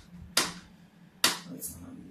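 Two sharp plastic clicks, about a second apart, as the lid of an Aquael Unimax 250 canister filter is pressed and snapped into place on the canister.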